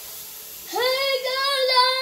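A little girl's voice holding one long, high sung note, starting about two-thirds of a second in.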